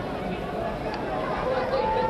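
Indistinct arena crowd chatter with a faint man's voice underneath, heard through an old, hissy broadcast sound track.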